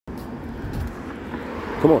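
Steady outdoor street background noise with a low rumble, then a man's voice saying "come" just before the end.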